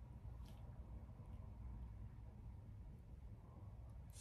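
Near silence: faint low room hum, with one faint click about half a second in.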